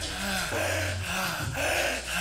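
A man breathing hard and fast through an open mouth, quick deep breaths in and out about twice a second: the continuous forced breathing of holotropic breathwork. A low steady hum runs underneath.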